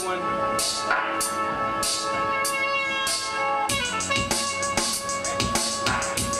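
Instrumental intro of a hip-hop beat played from the DJ's decks over the venue's sound system: a sustained melodic loop with sharp high percussion hits, joined by a full drum beat with kick drum a little past halfway through.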